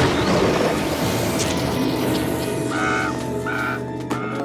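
Cartoon magic whoosh as a witch flies off on a broomstick into a swirling portal, a rushing sound that thins out over the first two seconds, under orchestral background music that carries on with short held notes near the end.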